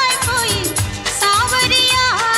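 Early-1980s Hindi film song: a wavering melody line with pitch bends over a steady, evenly pulsed percussion beat, with regular high ticks on top.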